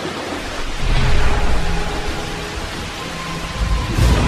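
Thunderstorm sound effect: steady rain with rolling thunder, the rumble swelling about a second in and again at the end.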